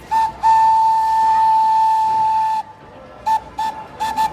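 Thomas the Tank Engine locomotive's whistle blowing a short toot, then one long blast of about two seconds, then two short toots near the end.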